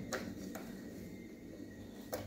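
Quiet handling of a plastic toilet flush valve as a new clip is pushed onto its seal: a small click just after the start and another about half a second in.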